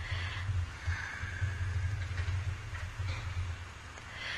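Low, steady hum with faint hiss: the background tone of the lecture-hall recording, with no speech.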